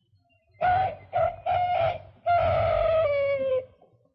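A phrase on the cartoon soundtrack from a pitched voice or instrument: three short notes and a longer fourth on about the same pitch. The last note slides down in pitch near the end.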